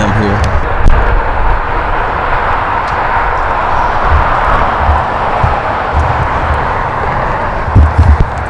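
Steady rush of highway traffic going by, with gusts of low rumble from wind on the microphone.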